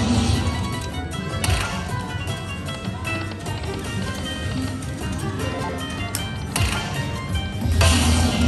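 Dragon Link Autumn Moon slot machine playing its hold-and-spin bonus music, with sudden sound effects as fireball coins land on the reels; the loudest comes near the end, when another coin lands and the free spins reset to three.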